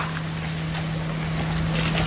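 A steady low hum over outdoor background noise, with a brief rustle near the end.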